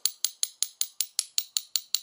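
A spoon tapping rapidly and lightly on a ribbed seashell, a steady run of sharp clicks about five or six a second, knocking a hole through the top of the shell.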